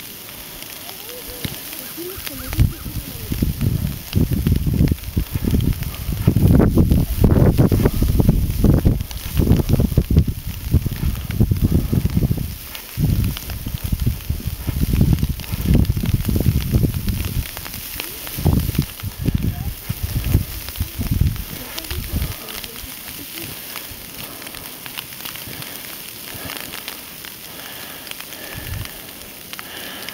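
Wind buffeting the camera microphone in a snowstorm, mixed with the crunch of footsteps wading through deep snow. The rumbling gusts come in bursts for most of the first twenty seconds, then settle to a steadier hiss.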